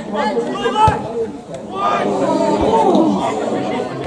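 Several men's voices calling out and chattering over one another, with a couple of brief sharp knocks about a second in.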